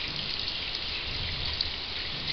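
Water running steadily from a sink faucet as soapy hands are rinsed under the stream.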